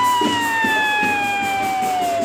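A child's long, high-pitched scream or squeal, held for about two and a half seconds. It shoots up in pitch at the start, then slowly sinks until it breaks off just after the end.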